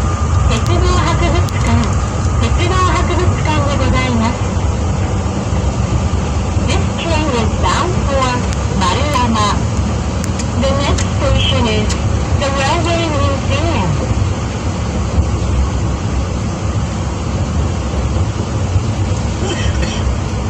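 Cabin running noise of a New Shuttle 1050 series rubber-tyred guideway train under way: a steady low rumble. Voices talk over it for about the first fourteen seconds, then stop.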